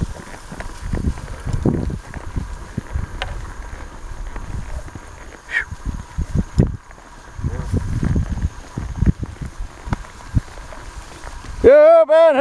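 A horse moving at a steady gait through tall grass: irregular dull hoof thumps and grass rustle, with wind buffeting the rider-held microphone. Near the end a loud, wavering high call cuts in.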